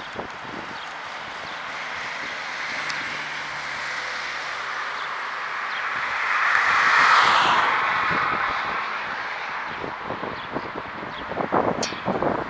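Traffic noise heard while moving along a road, with wind on the microphone: an oncoming car passes with a whoosh that swells and fades about seven seconds in.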